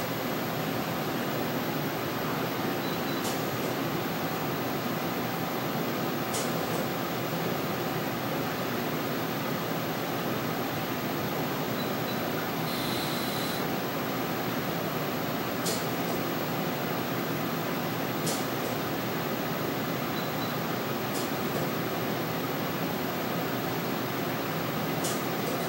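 Steady fan-like hum of running equipment, with a faint short tick about every three seconds.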